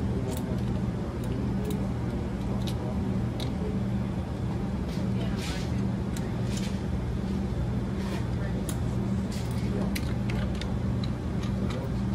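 Small scattered clicks and taps as the bottom end fitting is screwed onto the glass tube of a chromatography super loop, over a steady low room hum.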